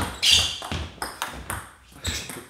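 Table tennis ball being served and bouncing: a quick, irregular series of about five sharp, ringing clicks of the celluloid/plastic ball against racket, table and floor.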